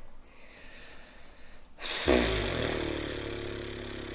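A man breathes out hard through his nose about halfway through, with a voiced, closed-mouth hum at a steady pitch that slowly fades. A softer breath comes before it.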